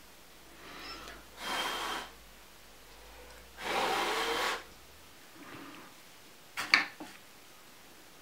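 Two breathy puffs of air blown by mouth, about a second and a half in and again around four seconds (the longer and louder), pushing the melted encaustic wax across the board. A couple of short clicks follow near the end.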